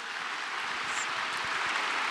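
Audience applauding, growing steadily louder.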